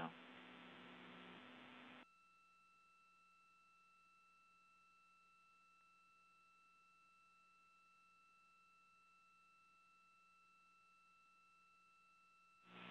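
Near silence: a faint hiss with a low hum, from the open radio line, cuts off suddenly about two seconds in, leaving only faint steady electronic tones.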